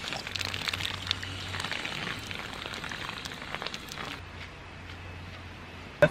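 Footsteps crunching on dry fallen leaves and dirt, irregular crackles that thin out after the first few seconds, over a low steady hum.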